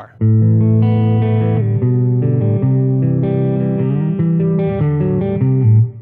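Electric guitar played through a Badcat Black Cat amp's dirty channel: a riff of distorted, ringing chords that starts just after the beginning and stops just before the end. The amp's cut control is turned fully clockwise, cutting the highs for a darker tone.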